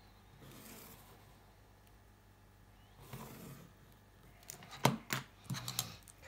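A pencil drawn along a plastic ruler on cardstock makes a faint, soft scratching stroke. Near the end come several sharp clicks and knocks as the pencil is set down and the plastic ruler is lifted and moved across the card.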